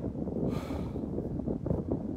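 Wind buffeting the microphone, a dense, uneven low rumble, with a short hiss about half a second in.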